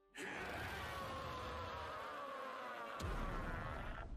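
Soundtrack audio from the anime episode playing: a steady buzzing hum whose tones slowly fall in pitch, with a sharp click and a deep swell about three seconds in.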